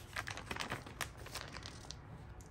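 Thin pages of a Hobonichi Cousin planner being turned and handled, a run of small, irregular paper crinkles and ticks.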